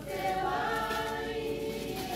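A choir of mixed voices singing, holding long, steady notes.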